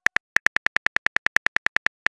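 Smartphone keyboard key clicks as a text message is typed, a quick even run of about ten taps a second.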